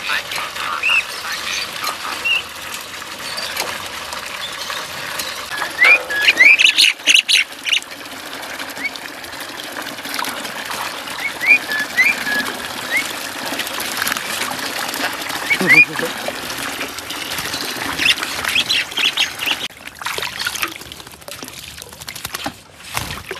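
Tap water pouring steadily into a metal basin while a crested myna bathes in it, splashing. Short rising whistled calls from the mynas come again and again, a loud burst of them about six to seven seconds in.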